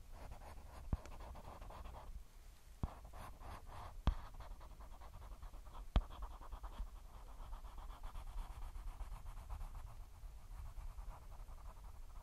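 Eyeliner brush stroking and scratching close against the microphone in quick, short strokes, with a few sharp taps, the loudest about six seconds in.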